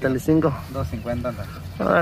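Voices talking throughout, the words not made out, over a low steady hum.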